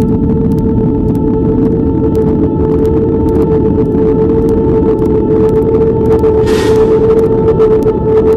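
Ambient background music: a steady droning tone held over a low rumble, with a short hiss about six and a half seconds in.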